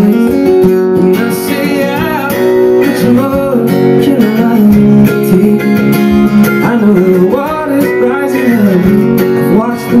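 Live acoustic folk-pop: a strummed acoustic guitar and a picked mandolin playing under a wordless, wavering vocal melody.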